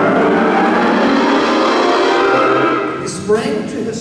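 School concert band of brass and woodwinds playing a loud sustained chord that holds for about three seconds and then fades away. A man's narrating voice comes in near the end.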